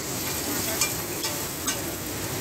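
Tikis frying on a flat iron tawa: a steady sizzle broken by three sharp clicks, one about every half second.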